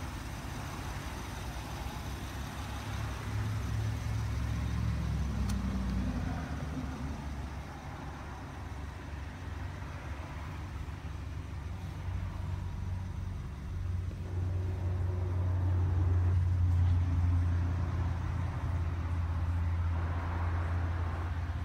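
Low, steady rumble of an idling car engine, louder in the second half.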